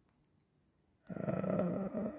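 Near silence for about a second, then a man's long, held hesitation sound, a drawn-out 'uhh'.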